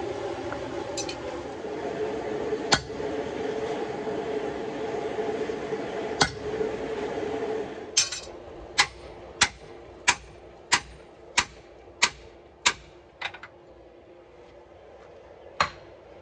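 A steady hum with a few single knocks, which stops about eight seconds in. Then a run of about nine sharp, ringing hammer blows, about one and a half a second: steel on steel as a hammer drives a drift through the eye of a hot H13 hot cut tool on a swage block, shaping an hourglass eye. One more blow comes near the end.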